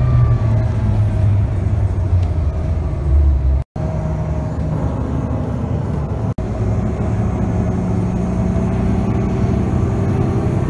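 Bus engine running with road and traffic noise, heard from inside a moving bus as a steady low drone. The sound breaks off abruptly twice, about a third and two-thirds of the way through, where the clips are cut together.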